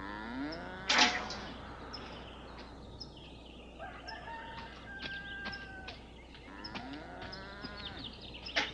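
Farmyard chickens calling, a rooster crowing among clucking hens, with a sharp knock about a second in.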